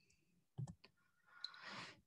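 Near-silent pause with a few faint clicks about half a second in, then a soft in-breath just before speech resumes.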